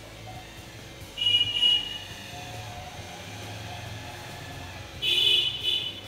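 A vehicle horn honks twice, each high-pitched blast under a second long, about four seconds apart, over faint background music.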